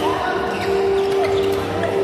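Badminton rally: rackets striking the shuttlecock with sharp clicks, and players' shoes squeaking and stepping on the court floor, in a large echoing sports hall.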